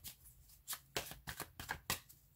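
A tarot deck being shuffled by hand: a quick, irregular run of card snaps and rustles, about four a second.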